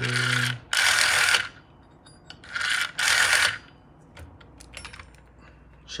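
Rotary telephone dial being pulled round and whirring back with a ratchety buzz, in two rounds: in the first second and a half, then again around the middle. A few light clicks follow near the end.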